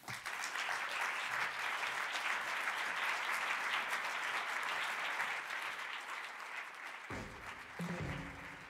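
Audience applauding steadily for several seconds. Music comes in about seven seconds in as the applause thins.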